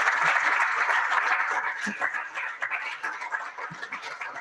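Audience applauding, the clapping thinning out about halfway through to a few scattered claps.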